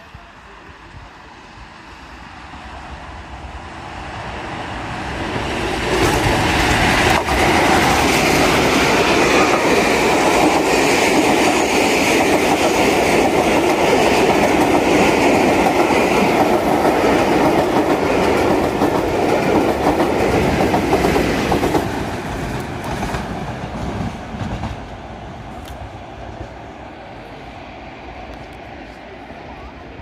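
A diesel locomotive hauling a rake of coaches passes through the station. It grows louder as it approaches, runs loud for about sixteen seconds with the clatter of the coaches' wheels over the rail joints, then fades as it moves away.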